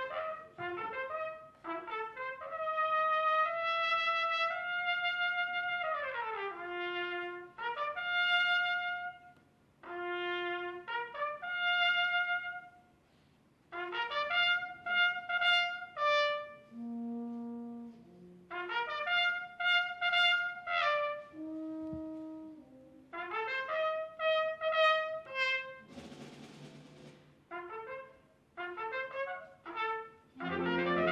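Solo trumpet playing a slow melody in separate phrases with short pauses between them, over quiet concert-band accompaniment.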